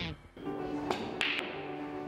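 Soft background music with steady held notes, and three sharp clicks of snooker balls striking each other in quick succession about a second in.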